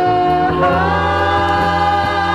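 A band's song with several voices holding long notes in harmony over a steady bass. The chord shifts about half a second in.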